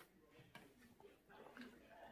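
Near silence: room tone, with a few faint, soft sounds.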